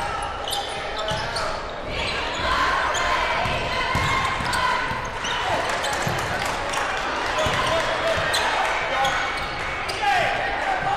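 Live sound of a basketball game in play: crowd voices chattering throughout, sneakers squeaking on the hardwood court, and the ball bouncing.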